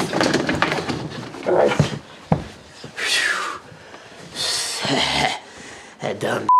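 A man grunting and breathing hard in several short, breathy bursts, with a single sharp knock a little over two seconds in.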